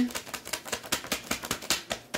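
Tarot cards being shuffled by hand: a rapid, uneven run of small clicks as the cards flick against each other.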